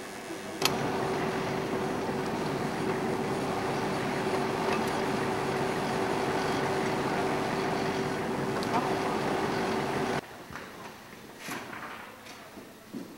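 Humvee's diesel V8 engine running steadily at idle, a constant hum with a steady whine through it; it starts abruptly under a second in and cuts off sharply about ten seconds in.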